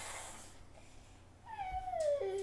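Quiet room after the guitar has stopped, then about one and a half seconds in a single high-pitched call begins, sliding down in pitch.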